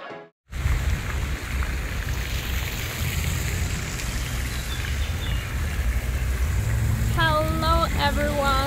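Outdoor ambience of wind buffeting the microphone, an uneven low rumble with a steady hiss above it. It starts after a brief silence about half a second in, and a woman's voice joins near the end.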